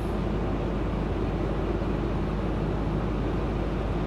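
Steady in-cab drone of a Kenworth semi-truck cruising on the highway: engine hum and road noise, even and unchanging.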